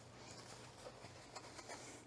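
Near silence: faint rustling and small ticks of cotton fabric being smoothed and shifted by hand, over a faint low steady hum.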